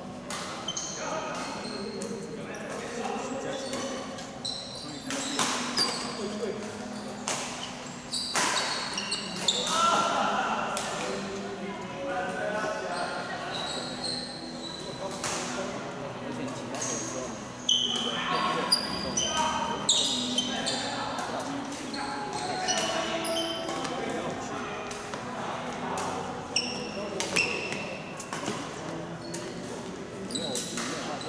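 Badminton doubles rally in a large echoing hall: repeated sharp racket strikes on the shuttlecock and players' footwork on the court, with voices in the background.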